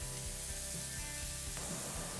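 Faint background music, a soft held chord that stops about one and a half seconds in, over a low steady sizzle from the pan of grated cauliflower and onion.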